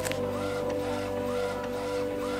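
Desktop printer feeding out and printing an illustration print, its mechanism repeating about twice a second, under background music.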